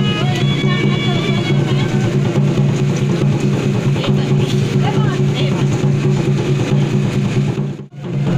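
Background music with a steady low drone and a melody over it, cutting out briefly near the end.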